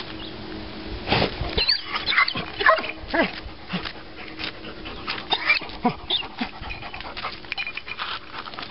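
A hunting dog digging in soil between rocks, its paws scraping and its nose snuffling in the hole. A run of short high whines comes about two to four seconds in.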